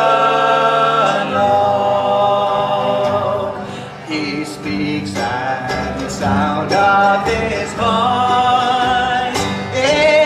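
Male voices singing in close harmony, holding long notes with vibrato, over acoustic guitar, mandolin and upright bass in a bluegrass-gospel style.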